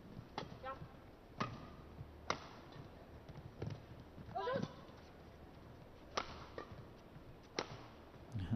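Badminton racket strings hitting the shuttlecock in a fast doubles rally: about seven sharp hits, roughly one a second, with a couple of short squeaks between them.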